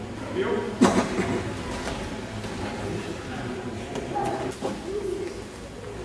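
Indistinct voices of several people talking, with one sharp smack a little under a second in that is the loudest sound.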